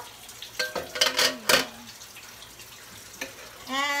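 An aluminium pot lid is lifted off with a few metal clanks about a second in. After that comes the soft, steady hiss of pork humba sauce simmering in the uncovered pot.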